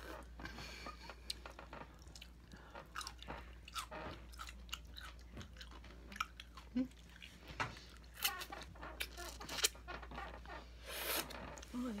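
Close-up chewing of juicy pickle slices: irregular wet crunches and mouth clicks, loudest a little past the middle.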